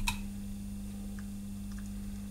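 Small clicks and ticks from soldering a wire onto a stepper motor's terminal: one sharp click at the start, then a few faint ticks, over a steady low hum.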